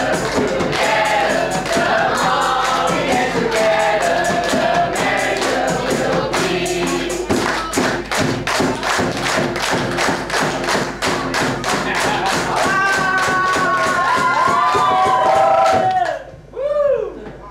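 A dikir barat group sings in chorus over fast, sharp rhythmic beats of clapping, which come closer together in the second half. It ends on long held notes and then stops abruptly.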